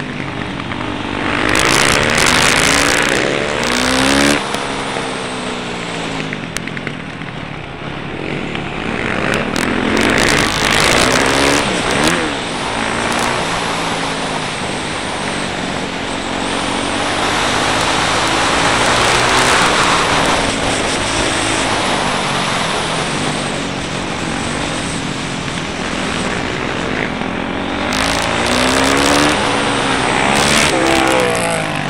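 Yamaha YZ450F single-cylinder four-stroke engine heard onboard, its pitch climbing and dropping again and again as the bike accelerates out of corners and slows into them, over wind rushing across the microphone.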